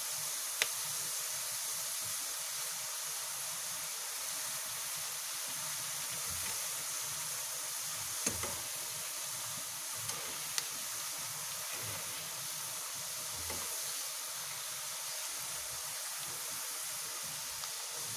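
Potato slices deep-frying in hot oil: a steady sizzle of bubbling oil, with a few brief clicks. The bubbling means the slices are still giving off moisture and are not yet crisp.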